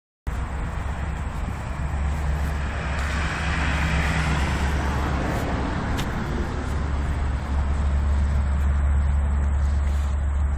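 Steady outdoor rumble and hiss, strongest in the low end, with a single faint click about six seconds in.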